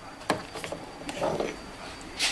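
A hand tool working a screw that holds a plastic trim cover in a car's trunk: a few small clicks in the first half second, then a short scraping rattle around a second and a half in.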